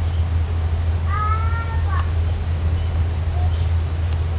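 A single high-pitched, drawn-out cry like a cat's meow, about a second long and starting about a second in, over a steady low hum.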